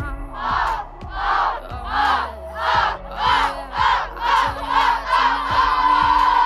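A girls' soccer team in a huddle chanting together: about nine short shouts in a steady rhythm that speeds up a little, then a long held shout together near the end. Background music plays underneath.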